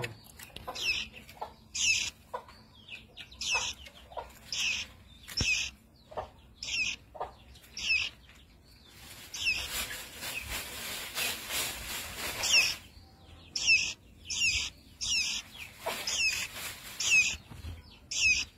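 Young caged songbird calling: a string of short, high chirps, about one a second, each sweeping downward. About nine seconds in, a noisier stretch of roughly three seconds runs under the chirps.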